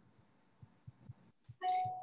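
A short electronic chime about one and a half seconds in, a single pitched tone that starts sharply and fades, after a stretch of quiet with a few faint ticks.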